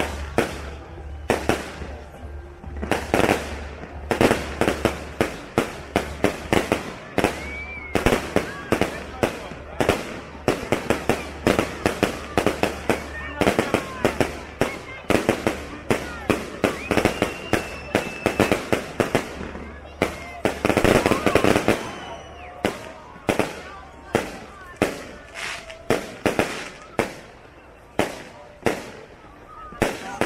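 Fireworks display: aerial shells bursting one after another, often several bangs a second, with a dense run of bursts a little past two-thirds of the way through.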